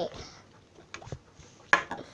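Stiff slime being worked out of its plastic tub by hand: a few soft clicks about a second in, with the room otherwise quiet.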